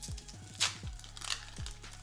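Foil Pokémon booster pack wrapper crinkling and crackling as it is torn open by hand, under faint background music with a low beat.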